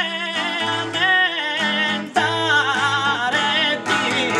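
A male voice singing Sardinian canto a chitarra, the canto in re, in an ornamented line whose pitch bends and turns, over unamplified acoustic guitar accompaniment. The voice breaks briefly about halfway through, then takes up a new phrase.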